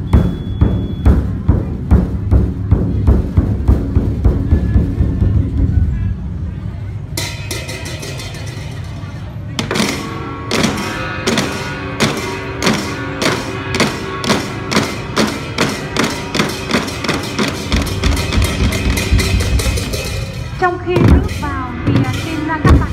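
Large ceremonial drums beaten in a steady rhythm, about two to three strokes a second, fading out about six seconds in. From about seven seconds a brass band plays a tune over a regular drum beat.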